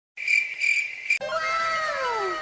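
A high, shrill chirping tone that swells three times and cuts off suddenly about a second in, followed by several tones sliding down in pitch together, like an edited-in sound effect.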